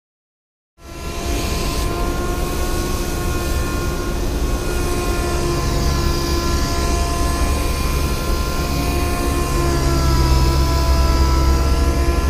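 Compressed-air blow gun, its tip wrapped in a clean cloth, blowing air over the car's paint. It makes a loud steady rush with a deep rumble and faint whistling tones, and starts suddenly about a second in.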